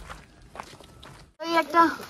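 Footsteps on a paved road, then, after a short cut, a voice saying something loudly in the last half-second.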